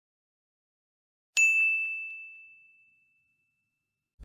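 A single bell-like ding about a second and a half in, ringing out and fading over about two seconds: a notification-bell sound effect.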